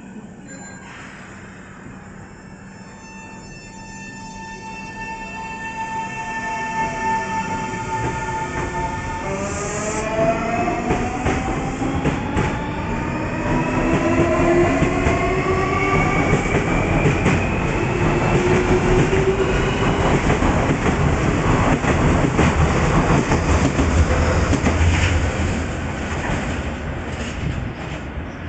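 Nankai 8300 series electric train departing: its traction motors whine in steady tones, then climb in pitch together as the train accelerates. Loud wheel-on-rail rumble and clatter follows as the cars pass.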